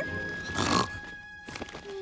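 A cartoon bat snoring: one short, raspy snore about half a second in, over soft background music with a held note.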